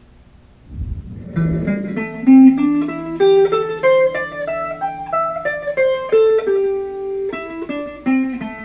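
Electric guitar playing the A minor pentatonic scale one note at a time in its fourth pattern from the 12th fret, stepping up the scale and then back down. A short low thud comes about a second in, just before the first note.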